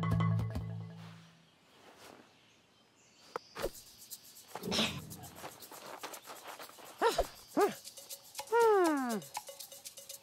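Cartoon soundtrack: music and sound effects, with a low hum at first, then rapid clicking and several short falling pitched calls, the longest near the end.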